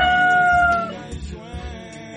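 The long final note of a rooster's crow, drawn out and falling slightly in pitch before it stops about a second in, over quieter background music.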